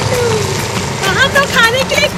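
A high voice calling out, first in a long falling glide, then in quick rising and falling excited calls about a second in, over a steady low hum.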